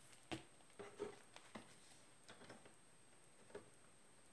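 Near silence with a few faint, brief rustles and soft taps of comic books in plastic sleeves with white backing boards being handled and shuffled.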